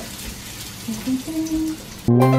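Chopped shallots frying in hot oil in a wok, a steady sizzle.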